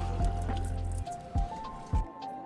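Background music: a melody of held notes over a deep bass that drops out about a second in, with a few drum-like hits.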